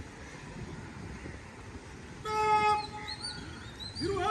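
A drawn-out shouted drill command, one long held call that starts about two seconds in, over low outdoor background noise.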